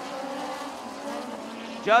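Several USAC midget race cars' four-cylinder engines running on a dirt oval, a steady blended drone whose pitch wavers slightly as the cars work through the turns.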